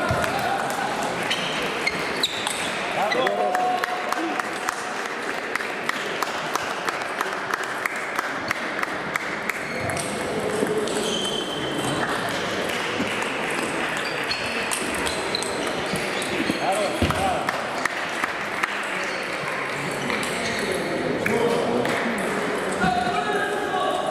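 Table tennis balls clicking off bats and tables in rallies: a rapid, irregular patter of sharp ticks from several tables playing at once.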